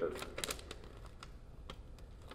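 Paper handled at a lectern, picked up close by the podium microphone: a quick cluster of light clicks and rustles in the first half second, then a few scattered soft clicks.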